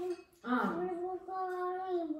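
A young girl singing in long, steady held notes, with a brief pause about half a second in.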